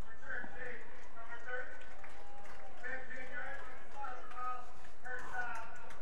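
Distant speech over stadium loudspeakers, the referee's penalty announcement, faint against the crowd ambience of an open-air stadium.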